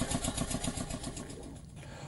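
A small engine or motor running with a rapid, even beat, fading out toward the end.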